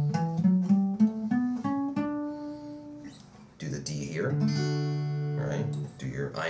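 Acoustic guitar playing a D major scale one note at a time, about eight plucked notes climbing an octave from low D through the first three seconds. After a short pause, more notes are played and left ringing.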